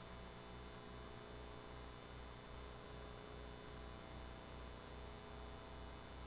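Low electrical hum that pulses about twice a second, with thin steady tones and faint hiss from the audio line, at low level.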